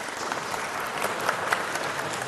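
A hall audience applauding: many hands clapping together in a steady, dense patter.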